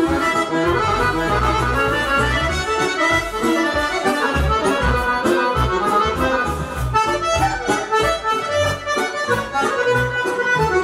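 Live band music led by accordion, a quick run of notes over a steady, rhythmic bass line.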